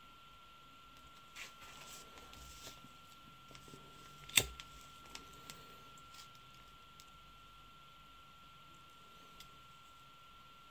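Quiet handling of wires and a disposable plastic lighter. One sharp click about four and a half seconds in is the lighter being struck, followed by a few small ticks, all over a faint steady high tone.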